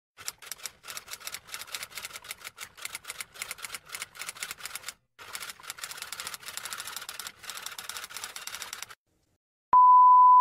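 Typewriter sound effect: rapid key clacks with a short break about halfway, stopping near the end. Just before the end a steady, loud, single-pitched beep starts, the TV colour-bars test tone.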